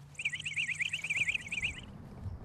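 A bird's rapid trill: a quick run of high chirps, about eight a second, lasting about a second and a half.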